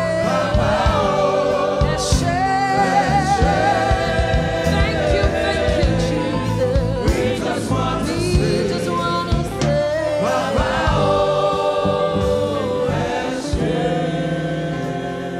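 Gospel worship song sung by a choir with instrumental backing: long sustained notes with a wavering vibrato over a steady bass line, with occasional sharp percussion hits.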